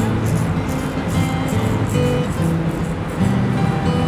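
Background music with held notes changing every half second or so.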